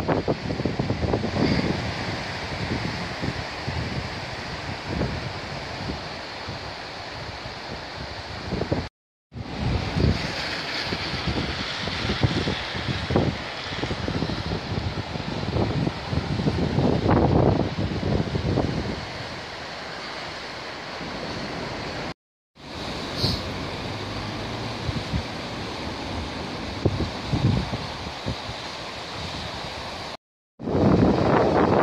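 The River Ogmore in flood, its fast, swollen water rushing steadily, with wind gusting irregularly on the microphone. The sound cuts out briefly twice.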